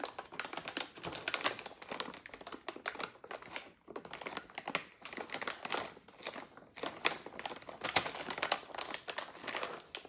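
Plastic snack bag crinkling and crackling irregularly as hands squeeze and work it.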